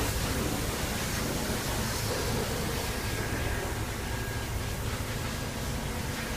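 Wind buffeting the microphone: a steady rushing noise with a fluttering low rumble.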